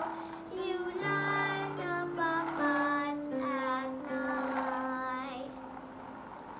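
A young girl singing a slow melody over sustained instrumental accompaniment notes.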